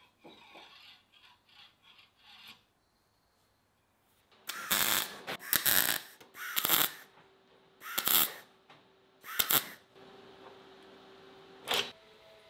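MIG welder laying short tack welds: about five bursts of arc crackle, each roughly half a second long and a second or so apart, with one more short burst near the end.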